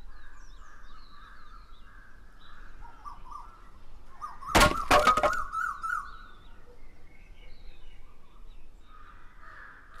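Birds chirping and calling in a tree-shaded village yard. About halfway through, a quick run of four or so loud, sharp knocks or cracks is the loudest sound, with a wavering call over it.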